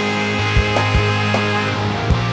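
Rock band playing an instrumental passage: distorted electric guitar holding a long high note over bass guitar and a steady drum beat.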